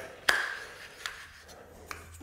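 Metal drywall corner flusher being clicked onto the end of its extension handle: one sharp metallic click with a brief ring, then two fainter clicks.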